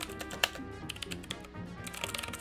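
Computer-keyboard typing sound effect, a quick irregular run of clicks with one sharper click about half a second in, over background music.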